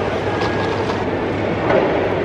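Steady, loud rumbling background noise with a low hum, and faint voices coming in near the end.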